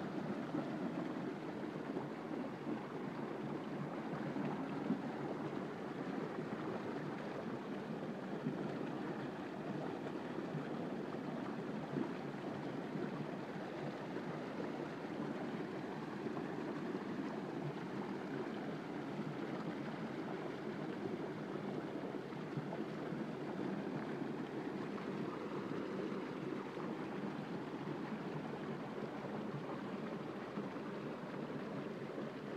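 Water rushing steadily through the concrete channel of a salmon hatchery's fish ladder.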